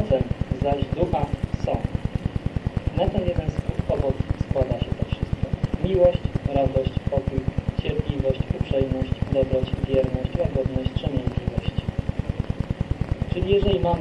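An indistinct voice talking over a fast, regular low pulsing noise from the recording.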